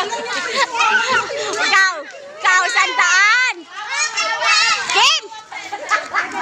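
Children shouting and shrieking excitedly, several high voices overlapping in loud bursts, the loudest stretch about halfway through.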